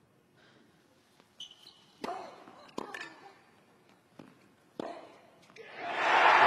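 Tennis rally: a few sharp racquet strikes on the ball, roughly a second apart, some followed by a player's short grunt. Crowd applause and cheering swell up near the end as the point is won with a backhand winner.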